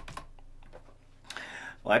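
Computer keyboard keystrokes, the Enter key pressed to start new lines of text: a sharp click at the start and a few lighter taps after it. A man starts to speak near the end.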